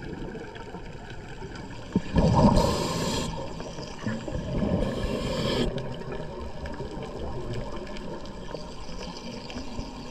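Underwater scuba sound: a diver's regulator exhaling, two gurgling bursts of bubbles about two seconds in and again about five seconds in, over a steady low underwater rumble.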